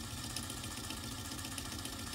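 Small electric motor that shakes the base of a desktop earthquake shake-table model, running with a steady hum and faint fine ticking.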